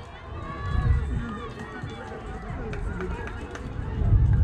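Players and spectators at a youth baseball game calling out and chattering, with wind rumbling on the microphone. A few sharp clicks come in the middle.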